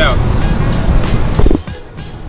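Road noise inside a car's cabin at highway speed, under background music with a steady beat. The road noise drops away sharply about one and a half seconds in.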